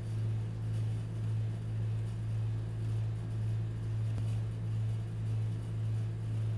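Steady low electrical hum with a slow, regular waver in level, from the refrigeration compressor running under the steel cold plate of an ice cream roll machine.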